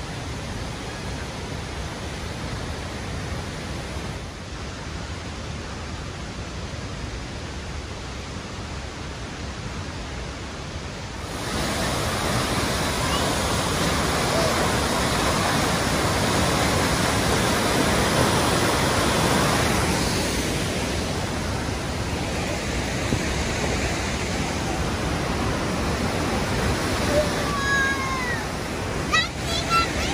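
Mountain waterfall: a steady rush of falling water that grows clearly louder about eleven seconds in and stays loud.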